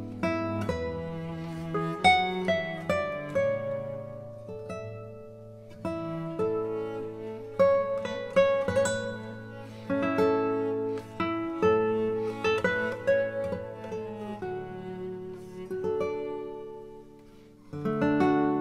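Background music: an acoustic guitar playing a run of plucked notes and strums over held low notes.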